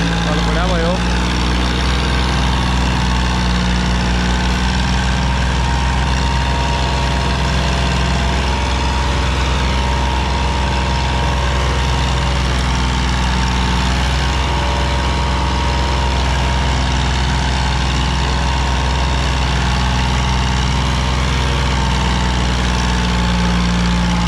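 Sonalika DI-35 tractor's three-cylinder diesel engine running steadily under load as it pulls a trolley heaped with sand through loose sand.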